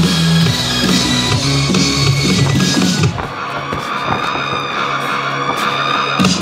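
Rock music with electric guitar and drums, at a steady level. About halfway through, the drums and bass thin out and a held, wavering guitar note carries on.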